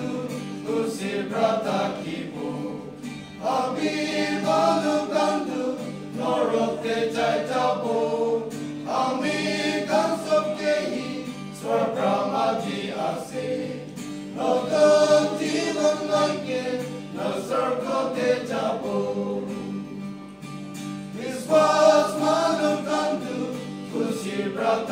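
Male choir singing a hymn in harmony in phrases of a couple of seconds each, accompanied by an acoustic guitar.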